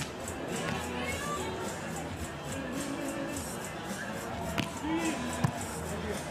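Stadium PA music playing over crowd voices at a beach volleyball court, with two sharp smacks near the end as the volleyball is hit.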